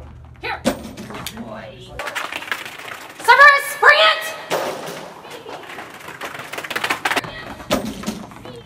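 Knocks and thumps from a dog working a flyball box and jumps, with two loud, high calls rising in pitch a little over three seconds in.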